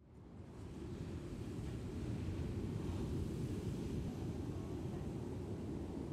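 Steady, low rushing noise of seaside wind and surf, fading in over about the first second and then holding even.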